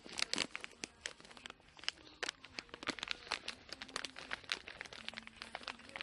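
Rapid, irregular crinkling and crackling of plastic packaging being handled close to the microphone.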